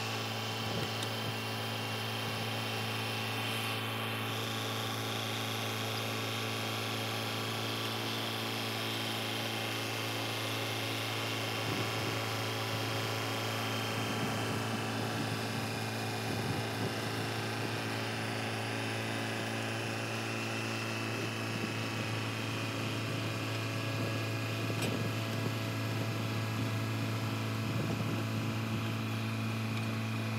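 John Deere 450H LGP crawler dozer's diesel engine running steadily while it pushes a load of brush and roots, with scattered clanks and rattles in the second half.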